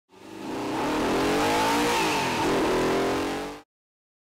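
A car driving hard at speed: its engine note climbs through the revs over a wide rush of tyre and wind noise, dips briefly about two and a half seconds in, then climbs again. The sound fades in at the start and cuts off abruptly shortly before the end.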